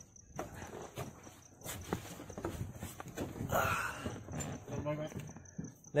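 Scattered knocks, clicks and rustling of a person climbing into the back of an open jeep and settling onto its seats, with faint voices talking in the background.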